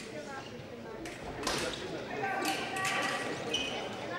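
Foil fencing action on the piste: sharp knocks of stamping footwork and blade contact during an attack, followed about two seconds in by a held, steady-pitched sound lasting about a second as the fencers close together and the scoring box lights.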